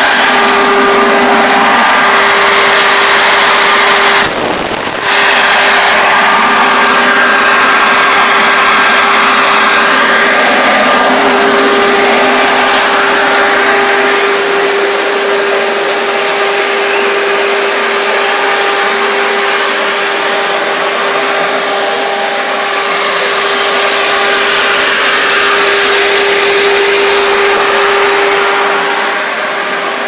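Loud steady drone of running machinery with a constant whine, like a large blower fan. It breaks off briefly about four seconds in, then slowly grows fainter from about halfway.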